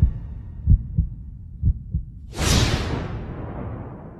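Trailer sound design: two pairs of deep, heartbeat-like thumps, then about two and a half seconds in a loud, bright whoosh-and-boom hit that dies away slowly.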